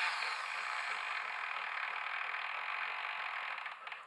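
Modified RC servo spinning a lead screw that drives a counterweight along its thread: a steady gear-and-screw whir at full traverse speed, which fades and stops just before the end.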